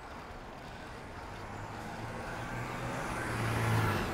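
A large truck drives past close by, its engine hum and road noise growing steadily louder and peaking near the end as it draws alongside.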